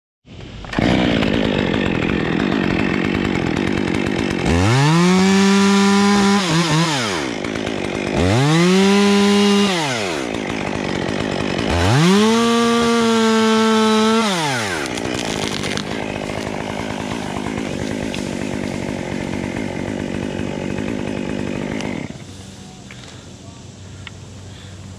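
Stihl chainsaw idling and opened to full throttle three times, a couple of seconds each, as it cuts into a limb. Each time the pitch rises, holds high, and falls back to idle. The engine sound drops away about two seconds before the end.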